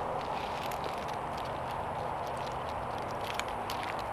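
Low rustling of a nylon gear-hanger strap being passed around a pine trunk and hooked up, with a few light clicks of its buckle or hook over a steady background hiss.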